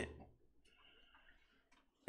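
Near silence: room tone, with the tail of a spoken word fading out at the start.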